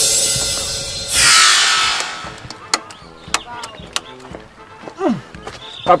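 Editing transition sound effects: a loud whoosh fades out about a second in, a second whoosh sweeps downward, and then come scattered sharp clicks and a few short sliding tones.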